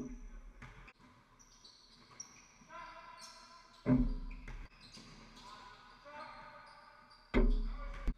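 Basketball game on an indoor court: two loud thuds of the basketball, about four and seven and a half seconds in, each ringing briefly, with a smaller knock at the start.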